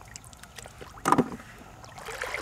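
Shallow pond water sloshing around a person's waders and bucket, with one short, loud splash about a second in.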